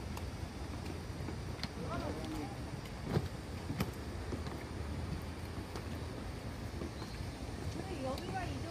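Steady low outdoor rumble, with faint voices of people nearby about two seconds in and again near the end, and two sharp knocks a little after three seconds and just before four seconds.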